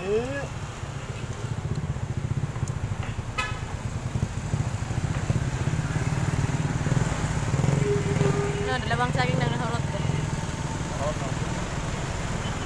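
A small engine running steadily with a low rumble, with a short steady tone like a horn toot about eight seconds in.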